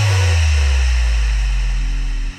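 Progressive house music: the full drop has just stopped, and a deep bass note holds on alone, sinking slightly in pitch, under a faint synth pad.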